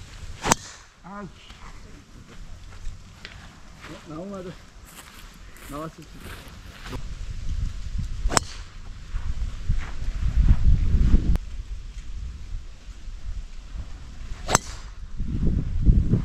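Three golf tee shots, each a single sharp crack of a club face striking a teed golf ball: about half a second in, about eight seconds in, and a second or so before the end. A low rumble swells about ten seconds in.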